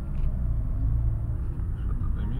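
Steady low road and running rumble heard inside the cabin of a Honda Fit Hybrid GP5 driving in city traffic.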